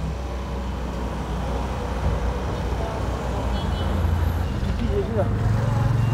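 A motor vehicle engine running with a steady low hum over street traffic noise; the hum shifts up in pitch about four seconds in.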